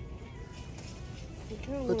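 Faint in-store background music over low shop hum, with a woman starting to speak near the end.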